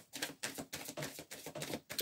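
A deck of tarot cards being shuffled by hand: a fast, irregular run of soft clicks.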